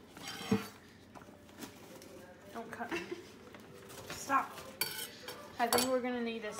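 Paper baking case being peeled and torn off a panettone, rustling and crinkling, with scattered sharp clicks and knocks on the stone countertop.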